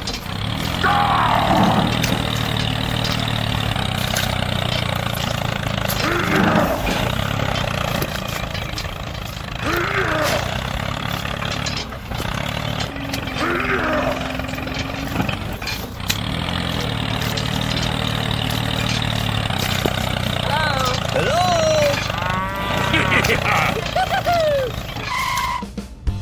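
Mini tractor engine running steadily as it drives through mud. Short voice-like sounds come every few seconds, and a run of squeaky, gliding calls comes near the end.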